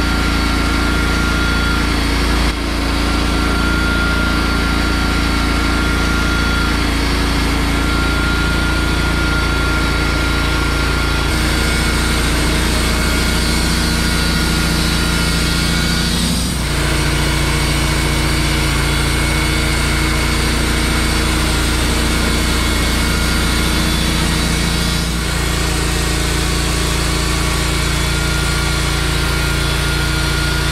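Wood-Mizer LT15 portable band sawmill running steadily as its band blade cuts lengthwise through a pine cant. The engine note shifts a few times, with brief dips about two and a half seconds in and about halfway through.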